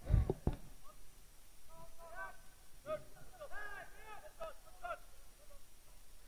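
Faint shouting from players and the team bench out on a soccer pitch, a few calls between about two and five seconds in. A couple of low thumps come right at the start.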